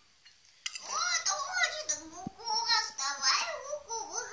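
A young girl's voice chattering, after a brief pause at the start, with a single short low knock about halfway through.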